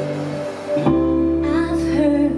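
A live band plays a slow soul song led by a woman singing over electric guitar and keyboard. A held chord fades out, and a little under a second in the band moves to a new chord with a deeper bass note. The woman's voice comes back in about halfway through.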